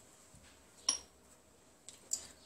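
A single sharp clink of kitchenware about a second in, with a fainter click near the end, over quiet kitchen room tone.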